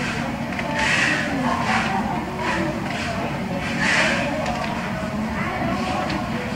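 Shop interior ambience: indistinct voices in the background over a steady low hum, with soft hushed noises coming and going about once a second.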